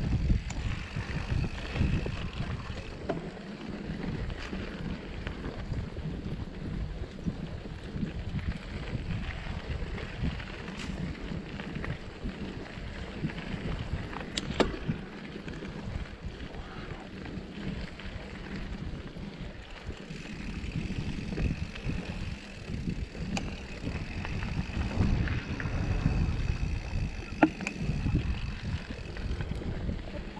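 Mountain bike riding down dirt singletrack, heard from the rider's own bike: a steady rumble of tyres and wind on the microphone, with occasional sharp clicks and knocks over bumps.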